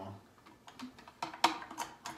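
Sharp plastic clicks, four or so, the loudest about one and a half seconds in, from the push-button lid of an OXO Good Grips food storage container being pressed and worked; the lid's rubber seal is missing, so it no longer seals.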